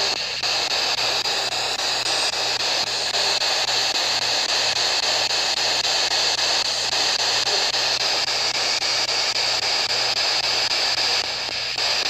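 Steady radio static from a P-SB11 dual-sweep spirit box scanning FM and AM stations, its sweep rate set to 250 ms per step.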